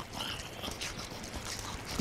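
Faint sounds of a dog walking close by, with light, irregular footsteps.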